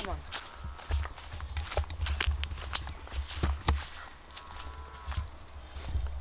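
Footsteps of someone walking on a grassy dirt path, with uneven dull low thumps and scattered light clicks.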